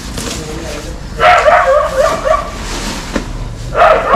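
An animal's wavering calls: one loud bout about a second long beginning a second in, and another starting near the end.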